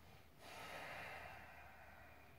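A person breathing out in one long, faint exhale. It starts about half a second in and slowly fades away.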